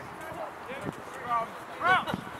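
Several short, distant shouts from people around a rugby scrum, the loudest near the end, over open-field background noise.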